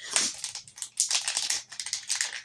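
Wrapping being crinkled and rustled by hand as a freshly opened package is unwrapped, in two crackling spells, the second about a second in.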